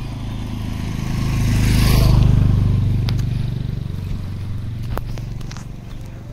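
Motorcycle passing by on the road, its engine growing louder to a peak about two seconds in, then fading away.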